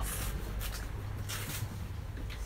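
Footsteps and shuffling of people walking through a boat's cabin, with two short scuffs, over a steady low hum.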